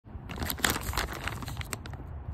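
White packaging pouch crinkling as it is handled and turned over in the hands, a quick run of crackles that fades out near the end.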